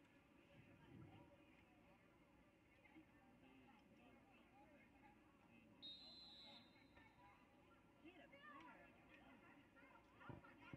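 Near silence: faint, distant voices from the sideline and field, with a brief high steady whistle about six seconds in.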